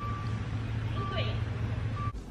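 A steady low hum under a faint, thin high beep that sounds about once a second.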